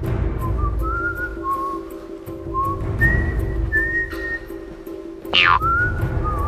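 A carefree whistled tune in short phrases over background music with a steady drone and a light ticking beat. Near the end a quick downward swoop cuts across it.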